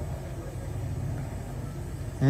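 Steady low background rumble of outdoor ambient noise, with no distinct events.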